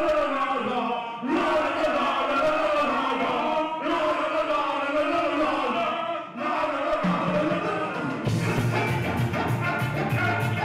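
Live ska band playing, with horns and voices in phrases that break off every few seconds; the full band with drums and bass comes in about eight seconds in.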